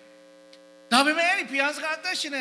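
Steady electrical hum from the sound system through a pause in a man's speech, several fixed tones held level; his amplified voice comes back about a second in and is the loudest sound, with the hum still under it.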